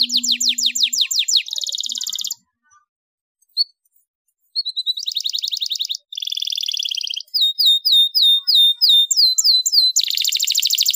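Domestic canary singing: fast trills, broken a couple of seconds in by a pause of about two seconds with a single short chip, then more trills and, near the end, a run of repeated swooping notes at about three a second.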